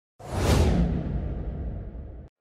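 Intro sound effect for the channel's logo animation: a whoosh over a deep rumble that swells in suddenly a moment after the start and then slowly fades away.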